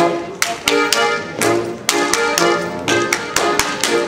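Bavarian folk dance music with sharp, irregularly spaced slaps and claps from a Schuhplattler dancer striking his thighs, shoe soles and hands over the music.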